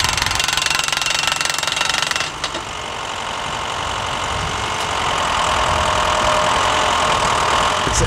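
Tractor-mounted pneumatic post-driving rig running: engine and air compressor with a steady mechanical knocking. A hissing sound for about the first two seconds changes suddenly to a steady machine noise that grows gradually louder.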